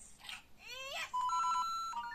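LEGO Super Mario interactive figure's built-in speaker playing its electronic sound effects: a short rising whoop, then steady electronic beeping tones at two pitches from about a second in.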